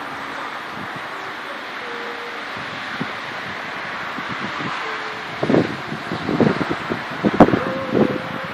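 Wind rushing steadily past the phone's microphone, with gusts buffeting it in loud, irregular bumps over the last few seconds.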